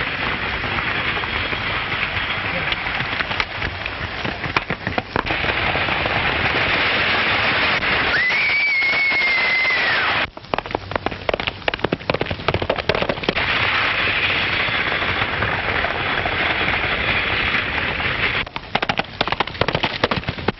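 Galloping horses' hooves and a rattling stagecoach at full speed, a clatter of rapid knocks over a steady hiss. A single long high tone, rising and then dropping away, sounds for about two seconds around eight seconds in, and the sound cuts off abruptly just after it.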